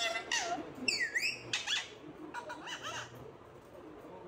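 Parakeet giving a run of high-pitched calls, one swooping down and back up about a second in, followed by shorter chattering calls.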